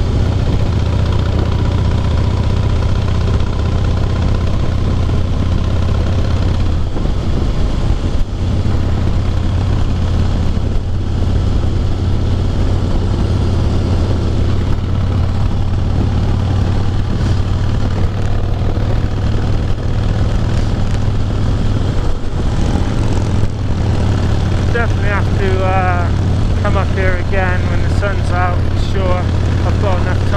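Harley-Davidson Heritage Softail's V-twin engine running steadily at highway cruising speed, with wind rushing over the microphone.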